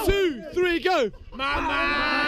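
Men shouting wordlessly: a couple of short falling whoops, then a long, steady held shout starting about one and a half seconds in.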